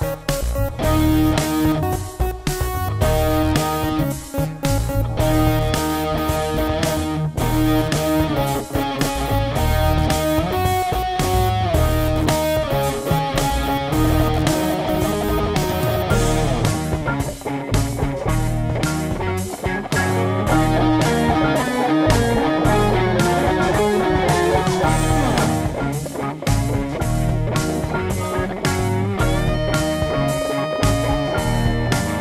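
Instrumental jam track: guitar playing over a steady beat, continuous and unbroken.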